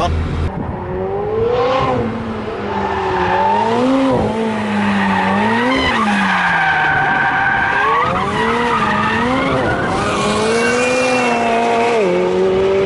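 McLaren 720S's twin-turbo V8 revving up and down again and again as the car drifts, its rear wheels sliding. Tyres squeal in long stretches over the engine.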